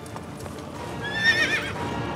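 A horse whinnies once, a quavering neigh about a second in, over the clip-clop of hooves.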